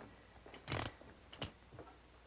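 Faint handling of a revolver: a short scrape a little under a second in, then a single sharp metallic click.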